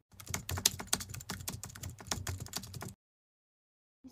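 Rapid, irregular clicking of computer-keyboard typing, a sound effect laid under a title card, lasting about three seconds and cutting off suddenly into silence.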